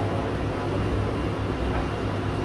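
Steady low hum with a hiss of background room noise, unbroken and even in level.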